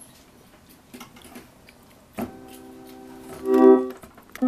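Hammond S-4 chord organ sounding a held chord from about two seconds in, after a few faint clicks. The chord swells sharply louder near the end as the volume lever is moved.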